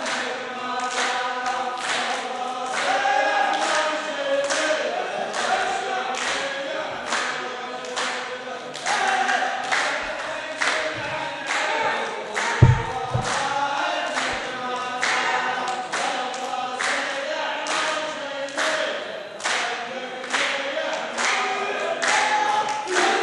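A line of men chanting verses in unison, with steady rhythmic hand-clapping at about one to two claps a second. A single low thump comes about twelve and a half seconds in.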